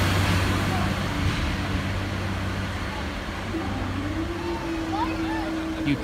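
Class 144 Pacer diesel multiple unit pulling away over the crossing, its low engine drone fading over the first couple of seconds, with voices of people waiting around it. About four seconds in a new steady hum begins.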